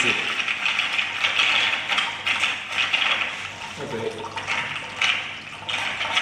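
Magnetic stirrer spinning a stir bar in a glass beaker of water, giving a steady swirling, sloshing liquid sound over a faint low hum; the dispersant powder is being stirred into solution.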